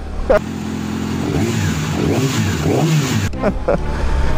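Yamaha Mio Gear scooter's single-cylinder engine running on the move, its pitch rising and falling with the throttle, over steady wind and road noise.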